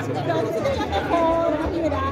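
Voices talking and chattering, with no distinct non-speech sound standing out.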